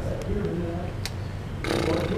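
Camera handling noise as a handheld camera is swung around and set down on a desk, with a loud rustling scrape near the end, over faint voices.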